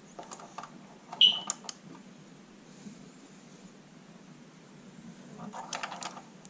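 A few light handling clicks and one sharp metallic clink about a second in, from hands working the wire spool and its retaining nut on a MIG welder's spool spindle; quiet after that, with some light rustling near the end.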